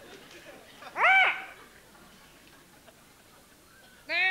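A single short hooting squawk, rising then falling in pitch, about a second in, voiced as the call of a puppet parrot. The last of an audience's laughter fades out at the start.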